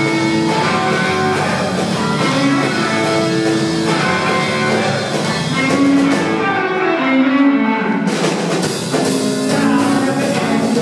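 Live roots-rock band playing an instrumental passage: electric lead guitar picking single-note lines over rhythm guitar, electric bass and drums.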